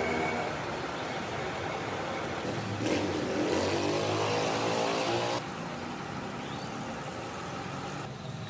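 Street traffic: a motor vehicle's engine runs close by, louder from about three seconds in and rising in pitch, then drops off sharply just past five seconds, leaving steady traffic noise.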